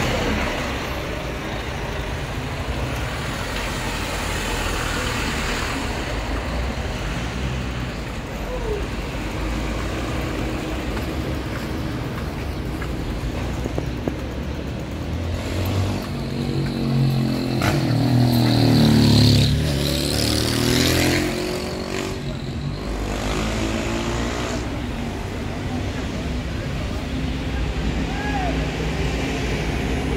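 Town street traffic with vehicle engines running. A vehicle drives past close by about two-thirds of the way through, its engine note rising and falling; this is the loudest moment.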